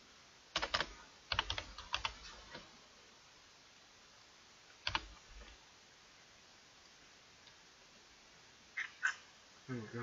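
Computer keyboard typing: a quick run of keystrokes in the first couple of seconds, then a single click about five seconds in and two more shortly before the end.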